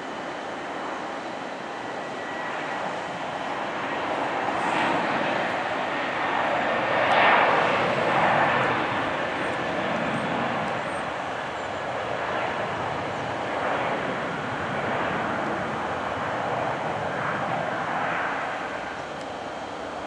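Airbus A330-200 jet engines at takeoff thrust during the takeoff roll, a broad roar that swells to its loudest about seven seconds in, then wavers and eases off.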